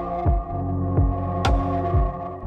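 Ambient relaxation music: a held synth chord over a low thumping pulse that falls in pitch, about two beats a second.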